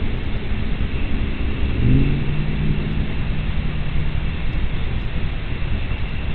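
An engine hum over a steady low rumble. The hum rises in pitch about two seconds in, holds steady for a couple of seconds, then fades.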